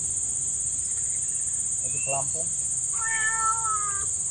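A cat meowing: a short call about two seconds in and a long, drawn-out meow, falling slightly in pitch, in the last second. Under it is a steady high insect drone.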